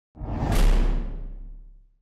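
Whoosh sound effect for a logo reveal, with a deep bass underneath. It swells in quickly and fades away over about a second and a half.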